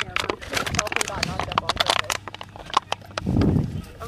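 Indistinct conversation among several people, with scattered short clicks and knocks, and a louder voice near the end.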